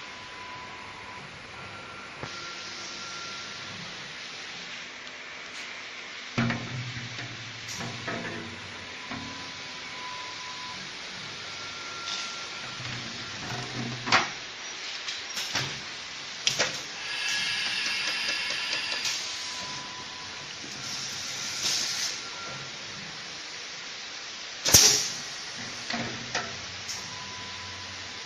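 Heat transfer printing machine for 5-gallon water bottles working: a steady hiss with sharp mechanical clacks now and then, a rattling stretch about two-thirds of the way in, and the loudest clack near the end. Short steady tones come and go in between.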